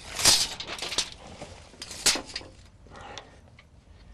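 Steel tape measure blade being pulled out and set against the door frame: a few short rattling scrapes, the loudest at the start, with a sharp click about two seconds in.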